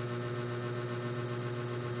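A steady low electrical hum with a few fainter steady tones above it, unchanging throughout.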